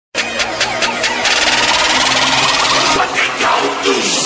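Noisy electronic intro sound effect for a logo animation: a run of quick crackling clicks, then a steady dense hiss, with more crackles near the end.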